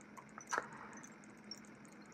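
Quiet room tone with a few faint, short clicks from hands handling fly-tying materials at a vise as Krystal Flash is tied in at the hook eye, the clearest click about half a second in.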